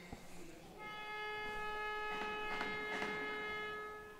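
A horn sounds one steady, single-pitch note that starts about a second in and is held for about three seconds, over faint rink background noise.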